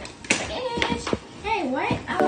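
A girl's voice talking, with sharp clicks and taps from handling a cardboard shipping box.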